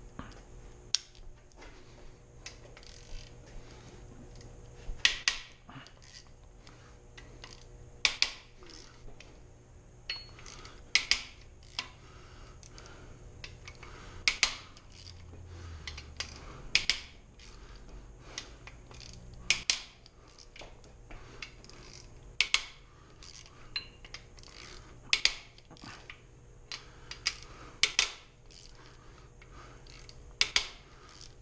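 Metal clicks and clinks of a ratchet wrench and socket working the main bearing cap bolts of a V8 engine block, a sharp clink every second or two, sometimes two or three close together.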